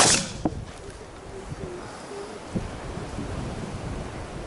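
Over-and-under shotgun fired once: a sharp, loud report with a short ringing tail, then a fainter sharp crack about half a second later.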